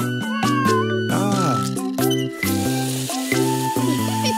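Children's song backing music with a cartoon cat meowing twice in the first half, each meow a rising-and-falling call. Tap water starts running about halfway through.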